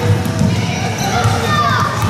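Basketballs bouncing on a gym court amid the chatter of children's voices.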